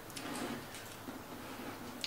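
Faint light ticks and handling noise as the roof of a cedar birdhouse is moved and closed by hand.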